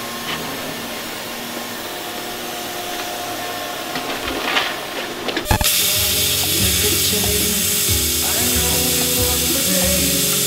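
A steady mechanical drone for about five seconds. Then, after an abrupt break, a loud plasma cutter hisses as it cuts the steel rudder wing plate, under background music.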